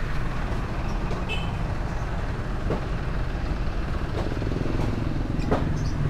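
Street traffic: a steady low rumble of motor vehicles, with a few faint clicks and knocks.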